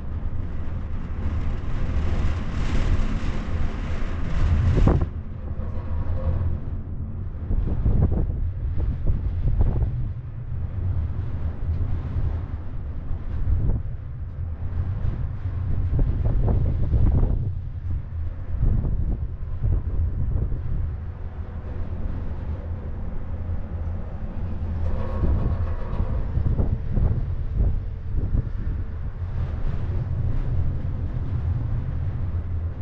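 Gondola cabin travelling along its haul rope: a steady low rumble with wind noise, louder for the first five seconds, and scattered short knocks and rattles from the cabin.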